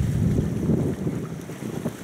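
Wind buffeting the microphone: a low, irregular rumble that gradually eases off.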